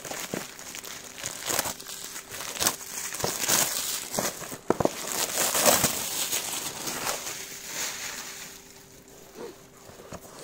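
Plastic wrapping crinkling and cardboard boxes of fireworks rustling and knocking as they are handled, in an irregular run of rustles and small clicks that dies down near the end.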